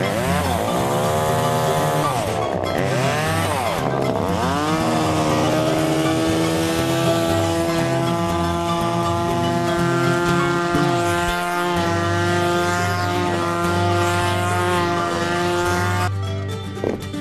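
Small chainsaw engine revving up and down about three times, then held running at a steady high pitch. A bass-heavy music bed plays underneath.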